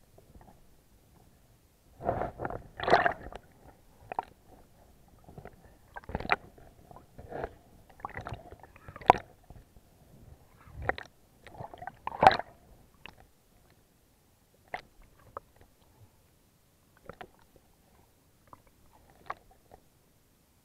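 Muffled underwater water movement picked up by an action camera: gurgling and sloshing with irregular knocks and rubbing against the camera. It is busiest and loudest over the first dozen seconds, then thins to a few scattered clicks.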